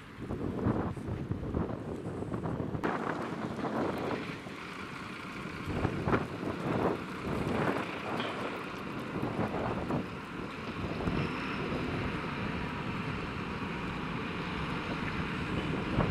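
Wind buffeting the microphone in gusts over a steady rumble of street and vehicle noise, with a diesel truck engine running.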